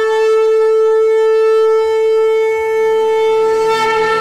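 A conch shell (shankha) blown in one long, steady note, as at a Hindu puja.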